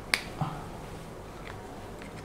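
A single sharp click just after the start, then a brief spoken 'all' and quiet room tone with a faint tick later on.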